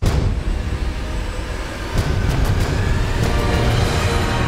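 A sudden loud, deep rumble hit with a hard attack, of the kind used in trailer sound design, carrying on as a dense rumble. A few sharp cracks come about two seconds in, and held music notes build underneath near the end.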